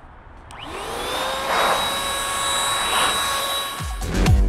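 Chemical Guys ProBlow handheld dryer-blower switched on with a click about half a second in. Its motor spins up with a rising whine, then runs steadily with rushing air, and the sound stops just before the end.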